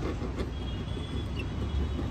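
Steady low rumble of vehicles and traffic in the background, with no distinct event standing out.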